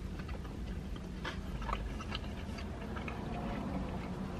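A person chewing a mouthful of burger: faint, irregular mouth clicks and smacks over a low steady rumble inside a car cabin.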